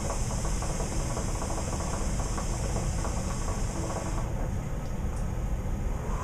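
Hookah water base bubbling rapidly as smoke is drawn through the hose, with an airy hiss of the draw that stops about four seconds in.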